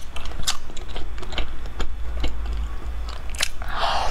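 Close-miked chewing of a soft meat-filled roll: irregular wet mouth clicks and smacks, then a louder bite into the roll near the end, over a steady low hum.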